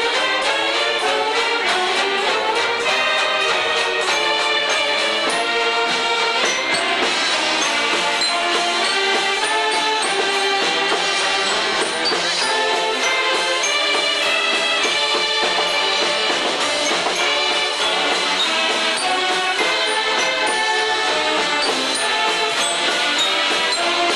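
Mummers string band playing a tune live: saxophones carry held chords and a moving melody over banjos and bass fiddle, with a steady, even beat.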